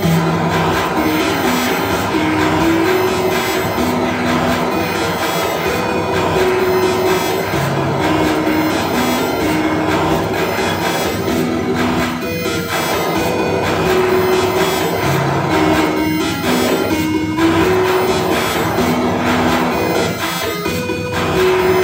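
Live electronic music: a slow melody of held, stepping single tones over a dense, noisy wash, played on a handheld electronic device and an arcade-button controller through a small mixer.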